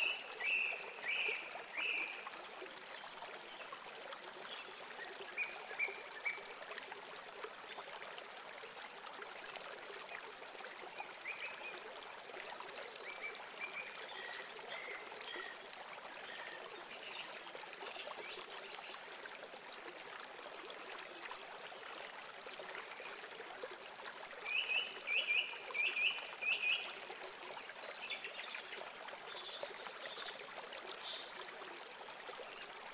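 House sparrows chirping in short runs of quick chirps, loudest right at the start and again in a longer run late on, with a few higher single notes in between, over a steady rushing hiss.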